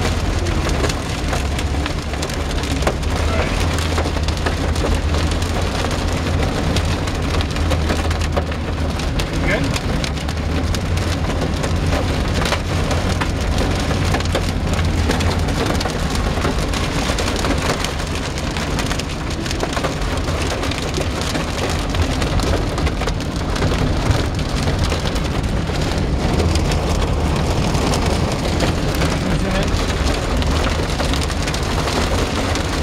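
Dime- to nickel-size hail and heavy rain pelting a car's roof and windshield, heard from inside the cabin as a dense, steady clatter of countless small impacts. A steady low rumble runs underneath.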